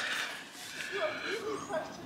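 Faint, indistinct voice sounds over a steady outdoor background hiss, with no clear words.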